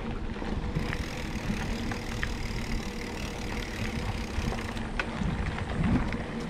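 Specialized Chisel hardtail mountain bike ridden over a dirt trail: a steady rumble of tyres and wind on the chest-mounted camera, with scattered clicks and rattles from the bike and a louder knock near the end.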